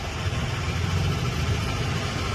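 Steady low rumble of background noise from building work nearby.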